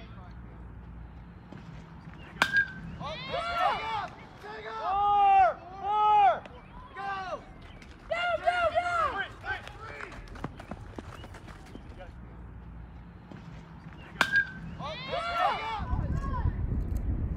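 A metal baseball bat hitting a pitched ball with a short ringing ping, twice, about two seconds in and again near the end. Each hit is followed by people shouting loudly for a few seconds.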